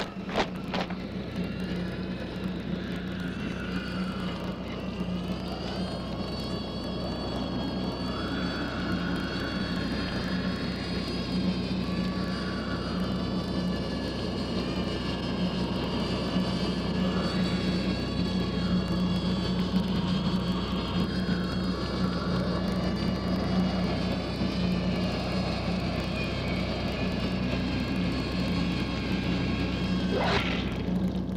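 Steady droning soundtrack: a constant low hum with several higher tones slowly bending and shifting above it.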